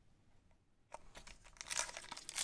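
Foil Pokémon TCG booster pack wrapper crinkling and tearing as it is opened by hand. The quick faint crackles start about a second in.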